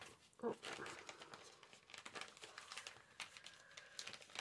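Paper, card and plastic packaging rustling and crinkling as they are handled, a quick run of small crackles.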